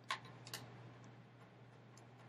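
Two sharp clicks about half a second apart as a felt-tip marker is put away after writing, over a faint steady low hum.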